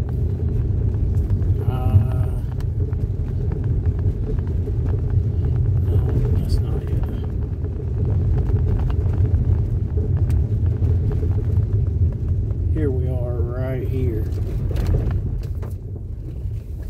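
Steady low road rumble heard inside a vehicle's cabin as it drives along a wet gravel and dirt road, with faint ticking from the road surface.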